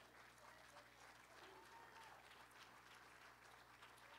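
Near silence, with faint scattered applause from the congregation under a steady low hum.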